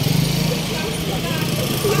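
Motorcycle engine running steadily at low revs close by, with a fast even pulse.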